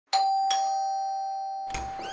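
Two-note doorbell chime, a high note then a lower one half a second later, both ringing on and slowly fading. A short burst of noise follows near the end.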